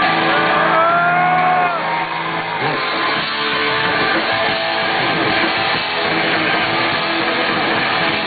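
Live punk rock band on an outdoor stage: electric guitars hold ringing notes at first, then about two and a half seconds in the whole band starts playing loud.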